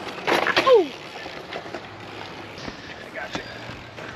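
A short shout falling in pitch, then a steady rushing noise of BMX tyres rolling on a concrete skatepark bowl, with a few faint clicks.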